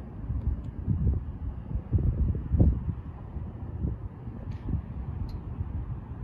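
Wind buffeting the microphone: an uneven, gusty low rumble that swells and drops every second or so.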